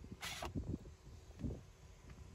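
A brief soft rustle as a hand handles the plastic boot parcel shelf, followed by faint scattered handling knocks.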